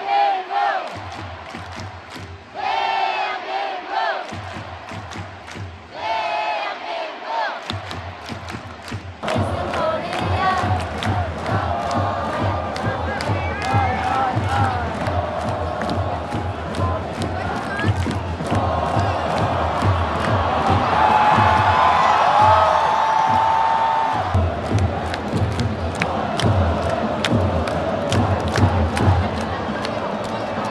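Large stadium crowd of football supporters chanting together in short bursts, then singing and chanting without a break from about nine seconds in, over a steady low beat.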